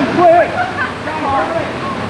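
Steady splash and rush of falling water in a swimming pool, with high-pitched voices calling and shouting over it from the first moment.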